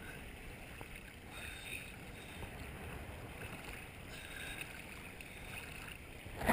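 Faint, steady sea water lapping and sloshing around a camera held at the surface of the water.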